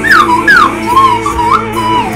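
Slide whistle playing a melody along with recorded band music: two quick downward swoops near the start, then shorter wavering notes that bend up and down.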